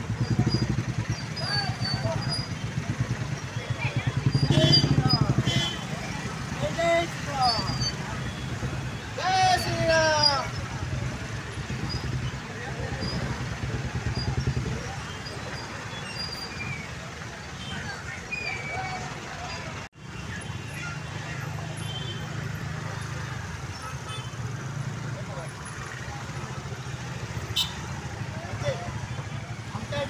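Many motorcycle and scooter engines running at low speed together as a procession rolls slowly past. Voices rise over the engines now and then, most of all in the first third.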